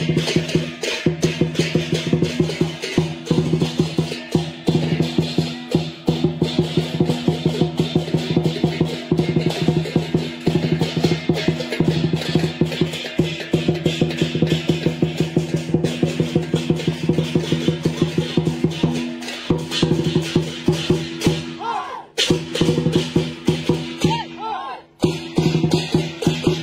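Chinese lion dance percussion music: a fast, continuous beat of drum strokes with cymbals, over a steady low ringing tone, briefly dropping out about 22 seconds in and again near the end.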